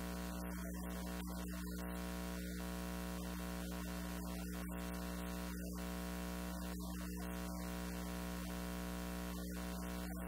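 Steady electrical hum and buzz made of many fixed tones, unchanging in loudness.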